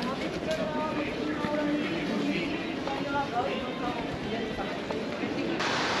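Background chatter of several people talking at once, faint and overlapping, over a steady wash of outdoor street noise.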